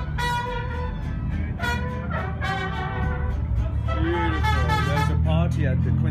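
Mariachi band playing, a trumpet holding long notes over a steady low bass line. About four seconds in, a voice comes in with wavering notes.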